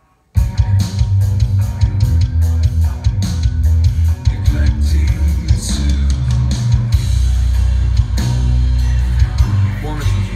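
A dense rock mix playing back from a multitrack DAW session, with sampled drums, heavily processed bass and guitar. It starts abruptly about a third of a second in and runs on with a heavy, steady low end.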